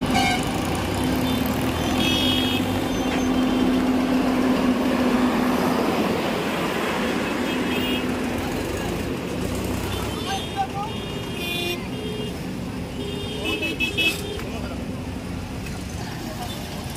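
Road traffic and engine noise at a roadworks, with a steady engine hum for the first several seconds and short vehicle horn toots at intervals, a couple of seconds in, around ten to eleven seconds and again near fourteen seconds.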